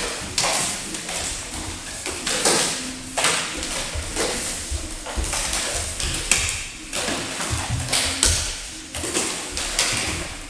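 Juggling clubs slapping into hands and knocking together as several jugglers pass clubs back and forth, an irregular stream of taps and knocks.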